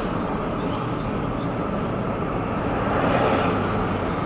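Steady road and engine noise of a moving car, heard from inside the cabin, swelling slightly about three seconds in.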